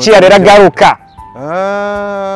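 A man speaks briefly, then a long, steady moo begins about a second and a half in, followed by a shorter one.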